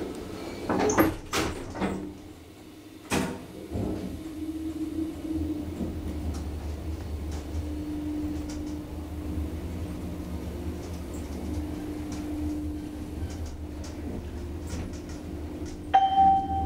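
The doors of a KONE-modernised Asea Graham traction elevator slide shut with a few knocks, followed by a sharp click about three seconds in. The car then starts and rides upward, its machine running with a steady low hum and a faint steady whine.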